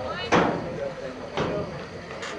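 A sharp knock, then a softer one about a second later, over the voices of spectators.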